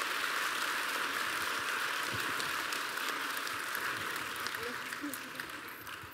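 Audience applauding: a dense, even patter of clapping that fades out near the end.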